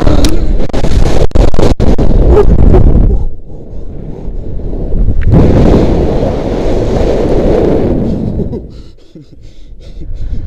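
Loud wind rushing over a helmet-mounted action camera's microphone as the jumper free-falls on a rope jump; it eases about three seconds in, surges again about five seconds in as the rope swings him through, and dies away near the end.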